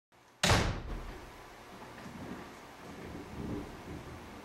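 A single sharp thud about half a second in that dies away within half a second, followed by low steady background noise.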